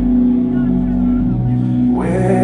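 Live rock band playing a slow, sustained passage: held guitar chords over bass, and the bass steps to a higher note partway through.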